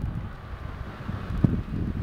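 Wind buffeting the microphone as a steady low rumble, with a single thump about one and a half seconds in.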